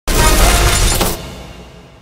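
News channel intro sting: a loud crash-like sound effect over music, full for about a second and then fading away.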